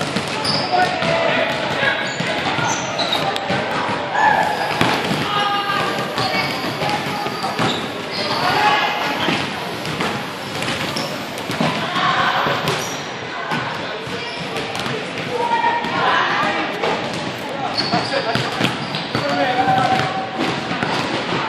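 Many basketballs bouncing on a hardwood gym floor, with indistinct shouts and voices of players echoing in a large gymnasium.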